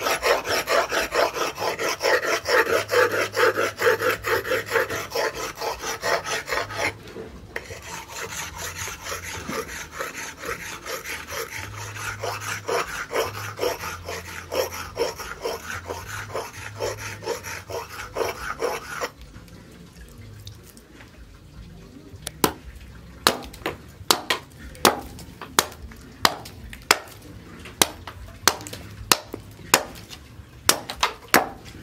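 Steel axe bit being honed by hand on a wet flat sharpening stone: quick, even back-and-forth scraping strokes with a brief pause. About two-thirds of the way in the honing stops, and the axe then chops into a wooden plank, giving sharp knocks roughly one to two a second.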